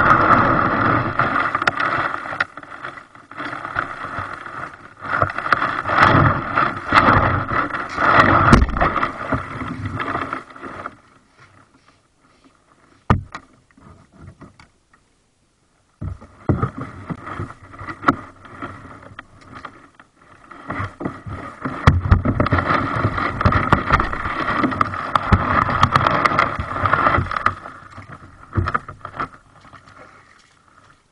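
Plastic kayak hull scraping and rattling over gravel as it is dragged ashore, in two long stretches with a pause and a single knock in between.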